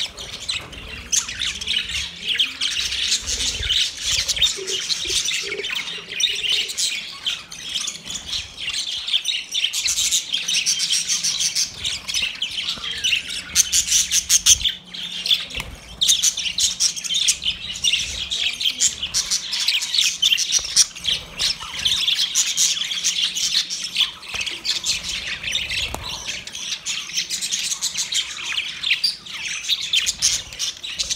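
A flock of budgerigars calling all at once, a dense, continuous chatter of rapid high chirps, warbles and squawks over one another with no pauses.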